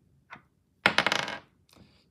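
A die, a d20 for an attack roll, thrown and clattering to rest, a quick rattle of clicks lasting about half a second, starting about a second in.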